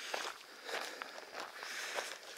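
A hiker's footsteps on a gravel road, faint crunching steps.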